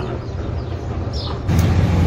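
Steady low background rumble with no speech, stepping up louder about one and a half seconds in.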